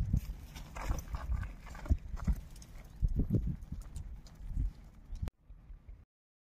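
Irregular footsteps on dry, hard dirt ground, mixed with a low rumble like wind on the microphone; the sound stops abruptly about five seconds in.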